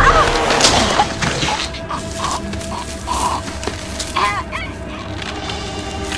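Horror film soundtrack: a low rumbling drone under a woman's short, strained cries and whimpers, several in quick succession in the middle.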